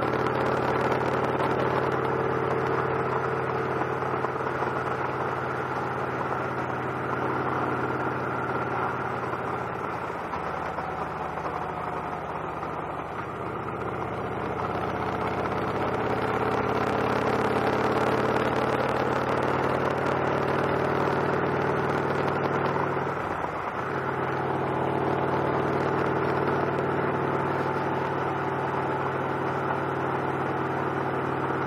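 Victory Cross Roads motorcycle's V-twin engine running under way on the road, with wind rush over the bike. The engine pitch sags and comes back up a few seconds in. About 23 seconds in, the pitch dips sharply and recovers.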